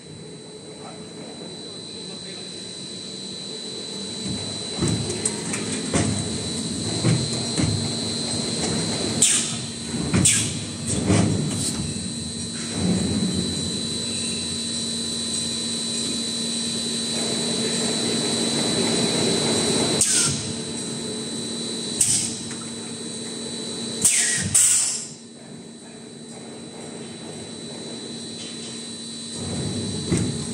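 Plastic bottle blow moulding machine running through its cycle: a steady hum with a high whine under it, clunks of the mould and clamp moving, and several short, sharp blasts of compressed air hissing out.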